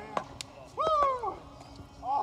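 A person's excited shout of celebration, one drawn-out call that falls in pitch, about a second in, just after two sharp clicks.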